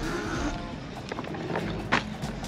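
Background music over the rolling noise of an electric scooter's solid tires on a concrete path, with one sharp click near the end.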